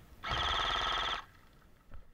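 A short electronic ringing tone with a rapid trill, lasting about a second, followed by a brief knock near the end.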